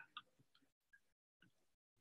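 Near silence, with a couple of faint ticks near the start.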